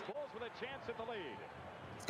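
Faint audio of the old television game broadcast: a commentator talking over arena noise.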